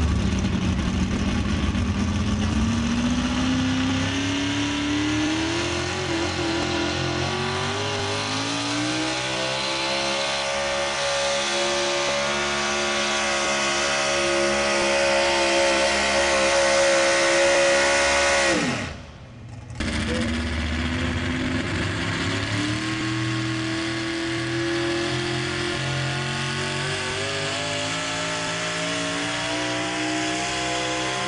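Pickup truck engine at full throttle pulling a weight-transfer sled. Its pitch climbs steadily for about ten seconds and then holds high under load. About two-thirds of the way in the sound breaks off abruptly, and a second pickup's engine comes in, rising and then running hard under load.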